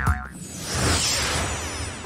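Cartoon sound effects: a wobbly boing tone that stops just after the start, then a whoosh that swells and fades.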